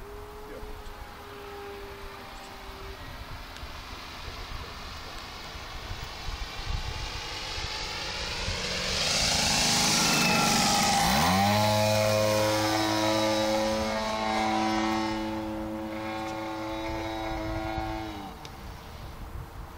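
A large RC airplane's DLE-55 two-stroke petrol engine and propeller in flight. The engine is faint at first and grows louder as the plane comes low and close with a rush of propeller noise. About eleven seconds in, its pitch climbs quickly and settles into a loud, steady drone that eases a little near the end.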